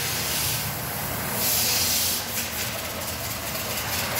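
Car workshop background noise: a steady hiss over a low rumble, with the hiss swelling louder for about half a second midway.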